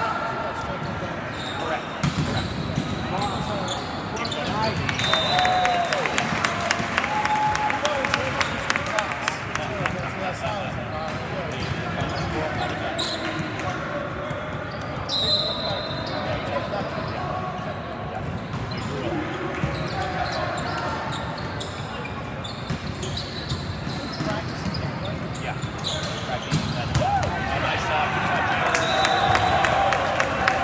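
Indoor volleyball in a large, echoing gym: players and spectators calling and talking, with frequent thuds of balls being hit and bouncing on the floor. The voices grow louder near the end.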